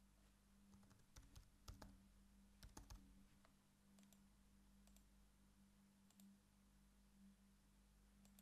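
Near silence with faint computer keyboard typing and mouse clicks: a run of keystrokes in the first few seconds, then a few scattered clicks, over a faint steady hum.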